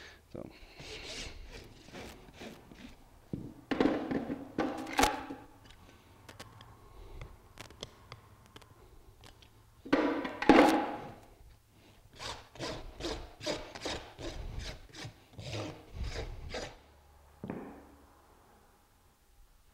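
Farrier's rasp filing the hoof wall of a horse's shod hoof in scraping strokes, a few scattered ones and then a quick, even run of strokes, about two a second, in the last few seconds.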